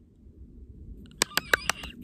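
Quiet countryside with a low steady rumble in the background. A little past a second in, a bird gives a quick run of about five sharp chirps.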